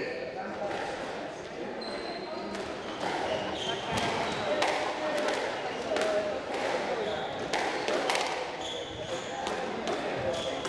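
Squash rally: the ball is struck by rackets and hits the court walls in an irregular series of sharp knocks, roughly two a second, with short high squeaks of court shoes on the wooden floor. The rally gets under way a few seconds in.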